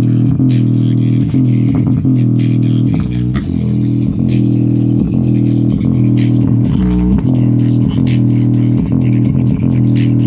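Bass-heavy music played loud through a JBL Xtreme portable Bluetooth speaker in its low-frequency mode, the exposed woofers pumping. Deep sustained bass notes shift every second or so under a steady beat.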